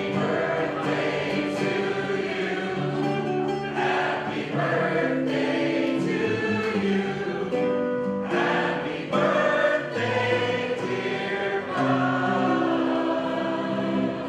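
Background music: a choir singing, with long held chords that change every second or two.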